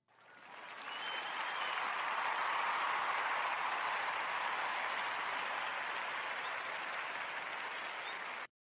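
Crowd applause, fading in over about a second and then holding steady.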